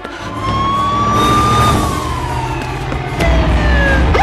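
A police car siren wailing: one slow sweep that climbs a little, then falls steadily over about two seconds, over a low rumble that grows louder about three seconds in.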